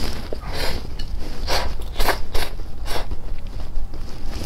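Close-miked eating of stir-fried instant fire noodles: a string of about five wet mouth noises as the noodles are drawn in and chewed.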